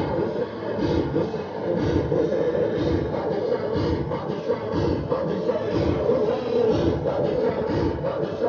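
Engines of a large motorcycle procession running together at low speed, with rhythmic chanting voices from the crowd over them.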